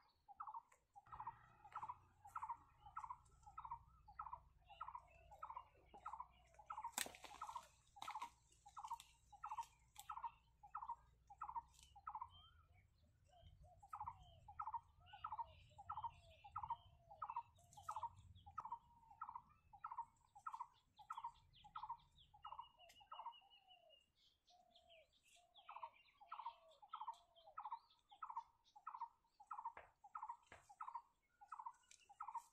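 Faint bird calling over and over, two or three short notes a second, in long runs broken by two brief pauses. A single sharp click about seven seconds in.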